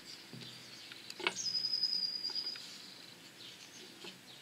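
A bird calling: one steady, high, whistle-like note of a little over a second, starting about a second in. Faint knocks of objects handled on the table are heard around it.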